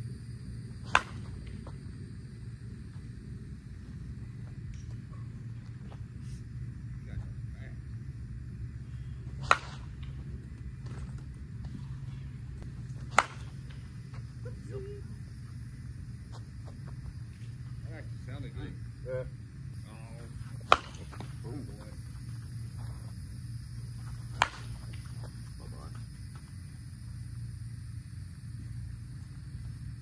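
Five sharp cracks of a composite slowpitch softball bat (the Axe Inferno senior bat) hitting pitched softballs, spread several seconds apart and the loudest about twenty seconds in, over a steady low hum.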